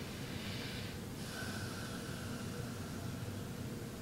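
A person breathing audibly through the nose: a short breath, then a longer one of about a second and a half, over a steady low room hum.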